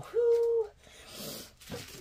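A woman's drawn-out "oh" of delight, held on one steady pitch for about half a second. About a second in comes a faint crinkle of small plastic zip bags of diamond-painting drills being picked up.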